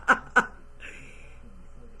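A woman laughing in two short bursts in the first half second, then only a faint hiss and low room tone.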